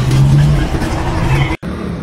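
A motor vehicle engine running with street noise, a steady low hum. The sound drops out for an instant about one and a half seconds in, then the street noise carries on.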